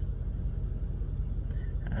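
Steady low rumble heard inside a car's cabin, with a faint tick about one and a half seconds in.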